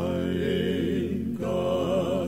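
Male gospel vocal quartet singing a spiritual in close harmony, holding long chords with vibrato, with a brief break between phrases about a second and a half in.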